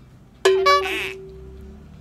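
A short musical sound effect: a bright struck note about half a second in that rings on and fades over about a second, with a quick high jingling flourish over its start.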